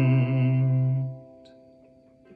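Final note of a sung song held over a ringing ukulele chord; the voice stops a little over a second in and the ukulele strings fade out.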